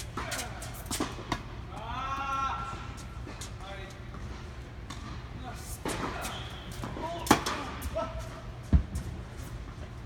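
A tennis rally on an indoor hard court: a series of sharp knocks of racket strikes and ball bounces, the loudest two in the second half. Brief voices come in between the strikes.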